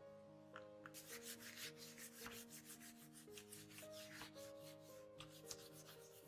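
Hands rubbing and pressing down a sheet of origami paper freshly glued onto tracing paper, a rapid, scratchy rubbing that starts about a second in and stops near the end, over quiet background music.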